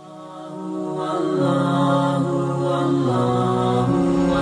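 Wordless vocal intro music fading in: long held notes that step from one pitch to the next.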